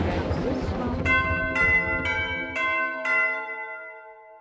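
Crowd chatter fading away in the first second, then five ringing bell-like chime strikes about half a second apart, their tones lingering and dying away.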